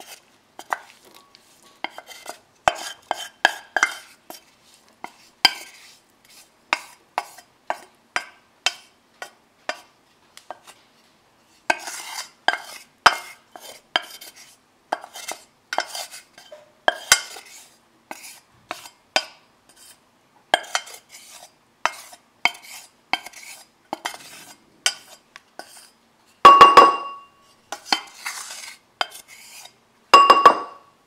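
Wooden spoon scraping and tapping inside a stainless steel saucepan, scooping out cooked, drained barley flakes in short irregular strokes. About three-quarters of the way through, a louder knock sets the pot ringing.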